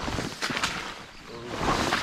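Footsteps pushing through wet, swampy grass and low plants, with stems and leaves swishing against the legs. There are two louder spells of rustling, one about half a second in and a longer one near the end.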